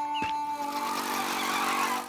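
A small engine approaching and getting louder, with a held musical note fading out in the first second.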